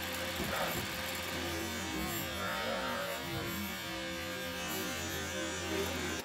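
CNC-converted South Bend SB1001 lathe running a threading pass under LinuxCNC: a steady motor hum with several whining tones that shift and waver partway through as the spindle turns and the feed drives the tool.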